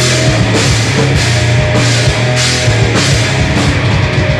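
Metal band playing loud and fast: heavily distorted electric guitars and bass over a drum kit, with cymbal crashes recurring about every half second.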